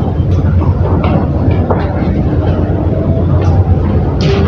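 A loud, steady low hum fills the room, with faint speech heard over it.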